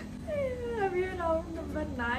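A woman's wordless, drawn-out voice that slides slowly down in pitch for about a second, then a short upward glide near the end.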